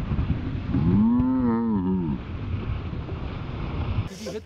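Wind rushing over the microphone and snowboards sliding on packed snow, with one drawn-out vocal yell about a second in that rises and falls in pitch.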